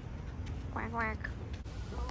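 Mallard duck quacking: one short double quack about a second in, over low wind rumble on the microphone.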